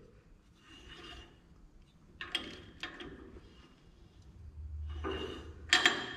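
Half-inch drive ratchet with a crowfoot wrench snugging a trailer hub's spindle nut to set wheel bearing preload: metal rasping and a few sharp clicks. Near the end the hub is turned by hand, a low rumble, to check how freely it spins.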